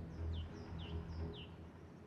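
A bird chirping three times, each a quick downward-sliding high chirp, about half a second apart, over soft background music.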